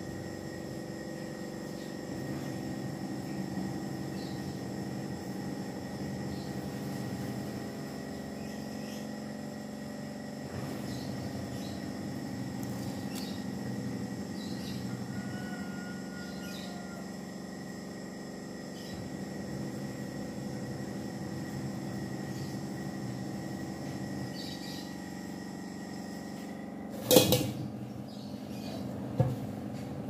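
Steady background hum with several held tones, under faint scattered clicks and snaps of fern stems being broken and trimmed with a knife on a wooden cutting board. Two sharp knocks near the end, about two seconds apart, the first the loudest.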